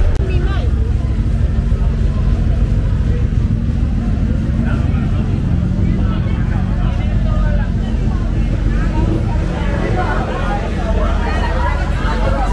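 A vehicle engine running close by gives a steady, loud low rumble. The chatter of a street crowd grows over it near the end.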